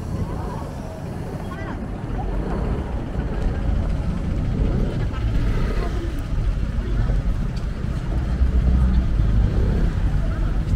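Busy city street ambience: a low rumble of road traffic and buses that grows louder toward the end, with passers-by talking.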